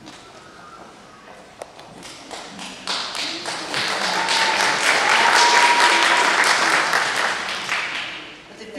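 Audience applauding: a few scattered taps at first, then clapping swells about three seconds in and fades near the end. One held high note rises above the clapping midway.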